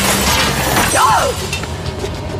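A window pane shattering, the crash of glass fading out about a second and a half in, over background music.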